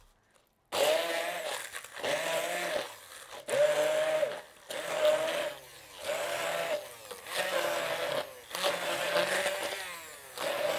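Handheld immersion (stick) blender run in about seven short pulses, chopping fresh green herb leaves in a tall glass beaker. Each pulse is a motor whine that spins up, holds and winds down. The pulsing starts just under a second in.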